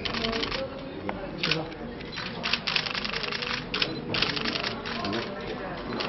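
Camera shutters firing in rapid bursts of clicks: press cameras shooting a posed photo call. The bursts come in several clusters, the longest around the middle.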